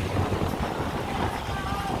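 Wind buffeting the microphone, with a low rumble of outdoor background noise. A few faint wavering tones come through late on.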